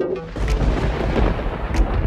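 Intro music for a logo animation: a deep booming rumble starts about a third of a second in, with sharp impact hits about half a second in and again near the end.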